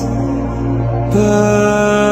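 Slow sacred chant: long held vocal notes over a steady low drone. A new held note comes in about a second in.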